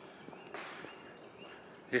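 Quiet wooded outdoor ambience with faint birds calling in the distance, a thin high steady call, and a brief soft rush of noise about half a second in.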